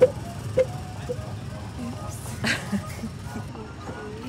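Low steady engine rumble from small open ride cars on a driving track, with a few short voice sounds and some background music.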